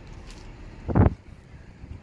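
A single dull thump about a second in, over a low steady background rumble.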